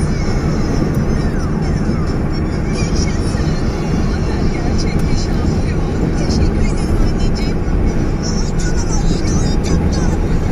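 Steady road and engine noise inside a car's cabin at highway speed, a loud, even low rumble.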